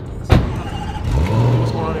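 A car door slams shut, then the SUV's engine starts, its pitch rising and then holding steady at a fast idle.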